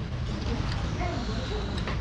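Faint background voices over a steady low hum, with a few light clinks of a metal fork and spoon against a ceramic plate.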